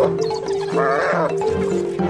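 A spotted hyena under attack gives one wavering squealing cry partway through, falling in pitch at its end. It sits over background music of steady held notes.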